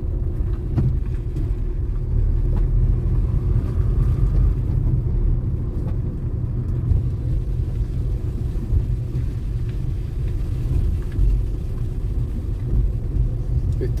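Steady low rumble of a car's engine and road noise heard from inside the cabin while driving slowly through residential streets.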